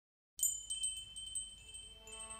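A moment of silence, then a quick run of high, ringing chime strikes, several in about a second and a half, fading as they go: the opening of a music track.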